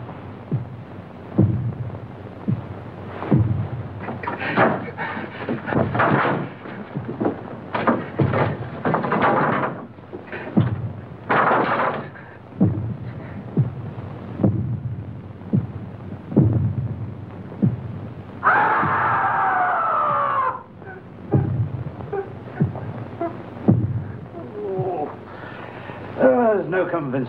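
Film soundtrack of a heavy heartbeat, a deep thud repeating about every one and a half to two seconds. Rougher, noisier bursts fall between the beats in the middle stretch, and a pitched sound falls steadily for about two seconds near the end.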